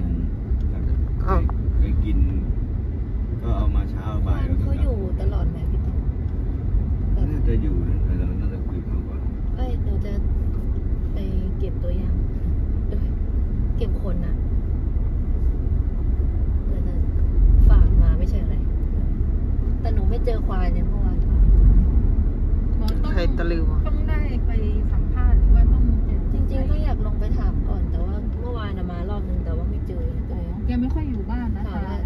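Car driving on a road, heard from inside the cabin: a steady low engine and road rumble that swells a few times in the second half.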